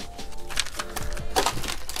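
Clear plastic carry sheet with vinyl scraps stuck to it crinkling and crackling in irregular clicks as it is handled, over faint background music.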